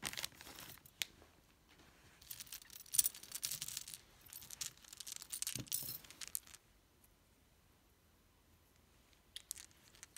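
A thin clear plastic bag crinkling and rustling in bursts as a hand rummages in it and pulls jewelry out, busiest over the first six seconds or so. Near the end there are a few light clicks.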